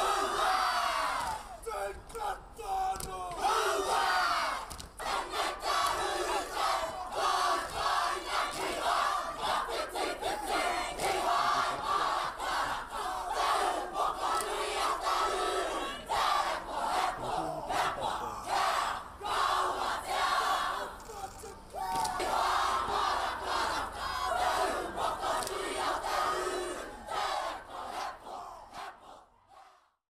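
A large group of students chanting a Māori haka in unison, loud rhythmic shouted calls from many voices. It fades out near the end.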